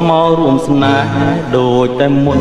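Cambodian pop song: a singer's voice with vibrato over band accompaniment.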